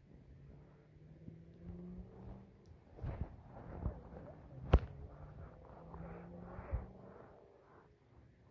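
One sharp knock a little past the middle, with a smaller one near the end, over quiet outdoor background with a faint low steady hum and some rustling.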